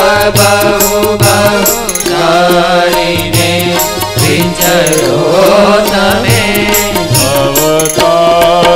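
Live Hindu devotional singing (a Swaminarayan bhajan) with held instrumental notes and a steady rhythmic beat running under the voices.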